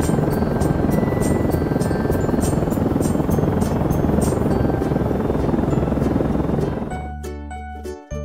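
Cartoon helicopter sound effect: a loud, steady rotor noise beating evenly over background music. It fades out about seven seconds in, leaving the music on its own.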